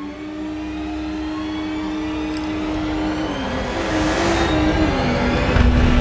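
Dramatic film background score: a long held low note that steps down in pitch partway through, over a whooshing swell that grows steadily louder into a deep rumble near the end.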